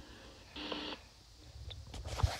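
A short, faint electronic beep about half a second in, against low background hiss.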